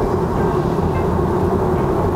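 Steady tyre and road noise inside the cabin of a Tesla Model 3 cruising at highway speed: an even rumble with a steady hum.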